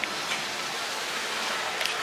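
Steady hiss of background noise with a couple of faint clicks, one at the start and one near the end.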